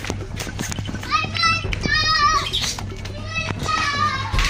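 Children's high-pitched shrieks and shouts, loudest in the middle, over background music.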